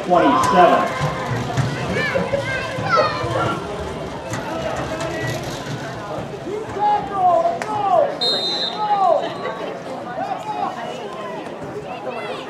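Many voices calling and shouting at once across a youth football field, children's and adults' mixed, with a few sharp claps. About eight seconds in, a short high steady tone sounds for about a second.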